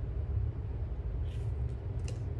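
Steady low background rumble, with one soft rustle of a paper cash envelope being handled a little over a second in.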